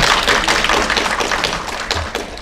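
Audience applauding, a dense patter of many hands clapping that slowly thins out toward the end.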